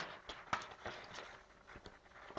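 A quick irregular run of light clicks and taps, several a second, with small pauses between them.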